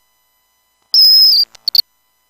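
A loud, high-pitched whistle-like tone held for about half a second, then three short chirps in quick succession.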